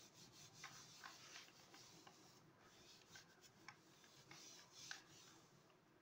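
Faint rubbing of a hand over a sheet of printer paper pressed onto a paint-coated silicone craft mat to pull a monoprint, with a few light ticks scattered through it.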